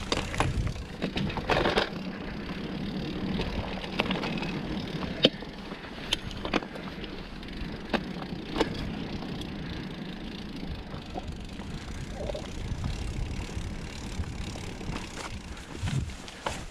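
Mountain bike riding over a dirt singletrack: steady rolling tyre and trail noise with scattered sharp clicks and knocks from the bike over bumps, the sharpest about five seconds in.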